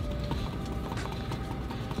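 Wooden stir stick scraping and knocking around the inside of a paper cup while mixing epoxy resin with its hardener, a light clicking about four or five times a second.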